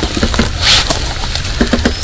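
Rustle of a light monofilament nylon hammock and its straps taking a person's weight as he sits down into it, with a short louder swish about a third of the way in. A steady low rumble lies underneath.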